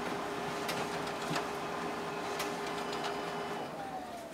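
Xerox WorkCentre 7435 colour copier running a copy job from its document feeder: a steady hum with a few sharp clicks as the two sheets feed through. The hum stops near the end.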